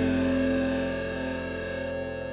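The last chord of an alt-rock song ringing out on distorted electric guitar with effects, fading away.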